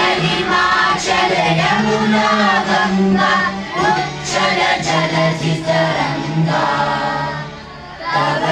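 A group of children singing a song together in unison, with long held notes and short breaths between phrases.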